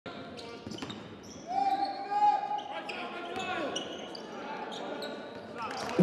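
A basketball being dribbled on a hardwood court, with sneakers squeaking in many short, high squeaks and players' voices calling out, in a large gym.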